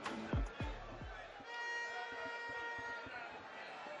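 A single held musical note, rich in overtones, sounds for about a second and a half from about a second and a half in. Before it come a few dull thumps.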